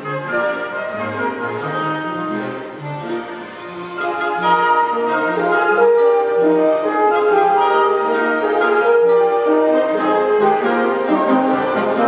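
Chamber orchestra playing a classical passage of sustained notes: bowed strings over a moving bass line, with wind instruments, swelling louder about four seconds in.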